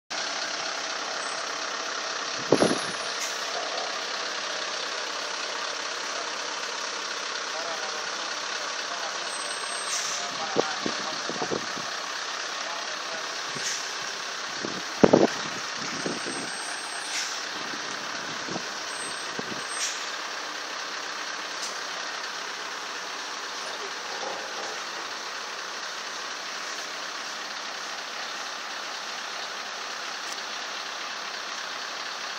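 Heavy truck engines running steadily, heard as an even background rumble and hiss, with a few sharp knocks, the loudest about two and a half seconds and fifteen seconds in.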